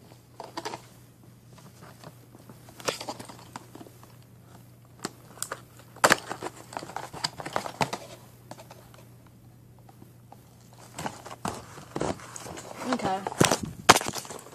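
A toy's packaging being opened by hand: irregular crinkling, rustling and tearing of a plastic inner bag and the box, with scattered sharp snaps and a busier stretch near the end.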